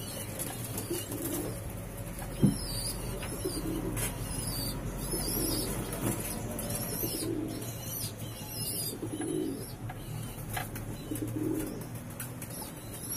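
Pouter pigeons cooing repeatedly, low calls about one every second or so, with a single sharp knock about two and a half seconds in.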